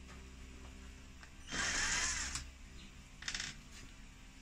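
Cordless drill-driver unscrewing the side casing screws of a gas fan heater. It runs for about a second, then briefly again near the end.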